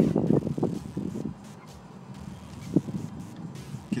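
Wind buffeting the microphone: an uneven, gusting low rumble, strongest in the first second or so, with a short pop near the middle.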